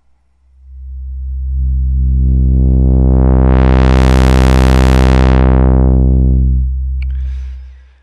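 Low sawtooth drone through the XaVCF's Mode II 4-pole lowpass filter (AS3320 chip) with the resonance at zero, its cutoff swept slowly open and back closed. The tone swells in as a dull low hum, brightens to a full buzzy sawtooth in the middle, then darkens again and fades out near the end.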